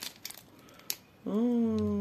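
A faint click and light handling noise from a plastic-wrapped soap pack. Then, in the second half, a woman makes about a second of one long, drawn-out hesitation sound, a wordless 'hmm', as she realises two packs are the same soap.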